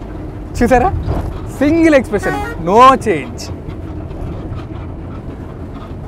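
Steady low rumble of a bus's engine and cabin, with people's voices over it for the first half, then the rumble alone.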